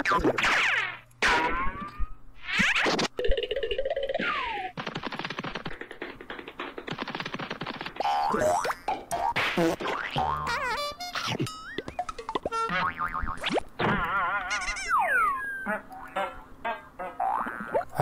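A voice played fast-forward, turned into high-pitched chipmunk-like chatter with quickly sliding, warbling pitches and a few short breaks.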